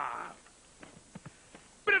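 A man's drawn-out spoken word trailing off, then a hush broken by a few faint short sounds, then his speech resuming near the end.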